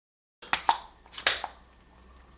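Several sharp plastic clicks, starting about half a second in, as the push-button cap on the end of a Wera Kraftform Kompakt ratcheting screwdriver handle is pressed hard to pop open the bit magazine.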